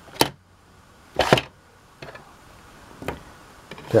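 A few plastic clicks and knocks as a toy carbonite block is pushed down into the slot of a plastic carbon-freezing chamber playset, the loudest about a second in.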